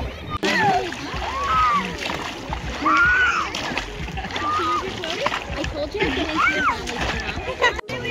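Water splashing as people wade and play in shallow lake water, with children's high voices calling out several times over it.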